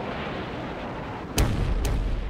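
Combat sound of explosions and gunfire: a rumbling blast carries on, then a sharp bang comes about a second and a half in, with a second, lighter one just after.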